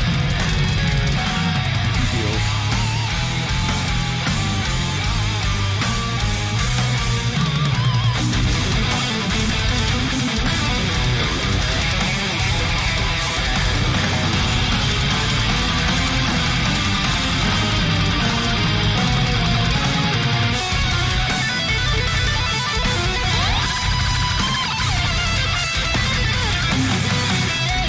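Heavy metal band recording playing loud and steady: drums, bass and distorted electric guitars in the song's solo section.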